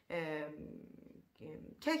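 A woman's voice drawing out the end of a word, then sliding into a low, creaky hesitation sound, a rattling vocal fry, before she goes on speaking near the end.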